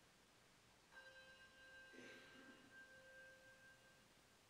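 Near silence, with a faint steady high-pitched tone of several pitches at once that comes in about a second in and holds until near the end.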